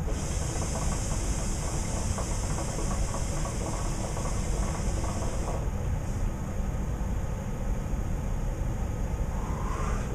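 A hookah being drawn on: air hissing through the hose and water bubbling in the base. The hiss stops after about five and a half seconds, when the draw ends.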